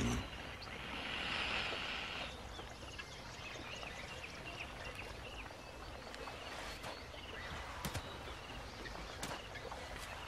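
Wild riverbank ambience: a brief high hiss in the first two seconds, then small birds giving short, repeated chirps, with a few soft knocks.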